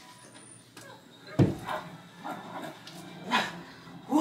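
A single sharp thump about a second and a half in, followed by a few short, faint vocal sounds.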